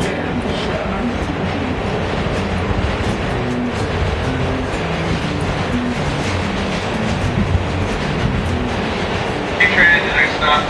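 A busker playing guitar and singing into a microphone inside a running NYC subway car, his music heard over the steady rumble and rattle of the train on the rails.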